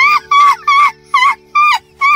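A woman laughing: a run of high-pitched 'ha' pulses, about three a second, each rising and falling in pitch.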